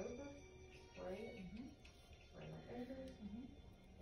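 Faint background speech: a voice talking quietly at a distance, with a thin steady high tone underneath.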